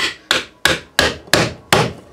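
A mallet driving two wooden wedges into the mouth of an ABS plastic knife sheath, forcing its solvent-bonded seams apart. Six even blows, about three a second.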